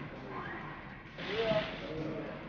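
Men's voices calling out on an outdoor pitch, with a short, loud burst of hiss about a second in.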